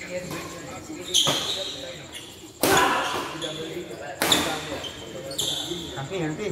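Badminton racket strikes on a shuttlecock during a doubles rally: four sharp hits about a second and a half apart, ringing on in a large hall, the second hit the loudest.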